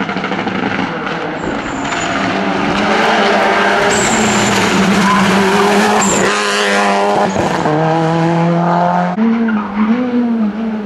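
Rally car at full speed on a tarmac stage, the engine at high revs, its pitch climbing and dropping through quick gear changes as the car comes past close by. Near the end the sound cuts abruptly to another car's engine.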